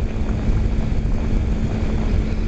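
Wind buffeting the microphone on a moving motorcycle, over the steady hum of the bike's engine at cruising speed. The bike is a 2008 Kawasaki Ninja 250R with a parallel-twin engine.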